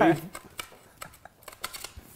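A spoken word, then faint, scattered clicks and rustles of a reflector panel's fabric and frame pole being handled during assembly.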